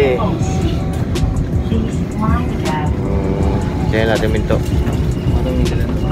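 Steady low rumble of a train carriage's running noise, with short bursts of voices about two and four seconds in.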